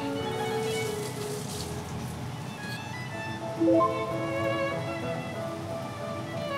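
Background music: a light string tune, with a quicker figure of short repeated notes coming in about halfway through.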